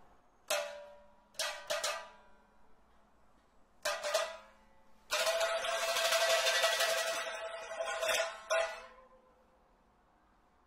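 Solo pipa: a few sharp plucked notes ringing out, then a loud, rapid run of repeated strokes on a held note about five seconds in that dies away near the end. The passage sounds out the martial image of iron cavalry with swords and spears just sung by the Kun opera soprano.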